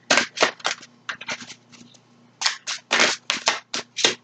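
A tarot deck being shuffled by hand: a run of quick, irregular card snaps and flicks, with a brief lull about halfway. The deck is hard to shuffle.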